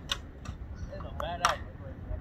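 Indistinct voices with a few sharp clicks over a low background rumble, the loudest click about one and a half seconds in.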